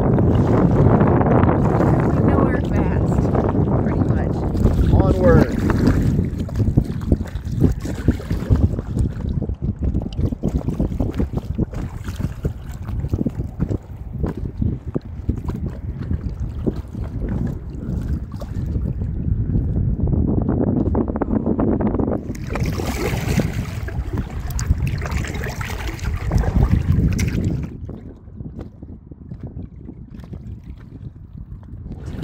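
Wind buffeting the microphone over the water sounds of paddling a two-person inflatable kayak; the noise is gusty and uneven and drops away near the end.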